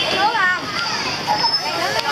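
Children playing, with high-pitched shouts and chatter; one child's call rises and falls about half a second in.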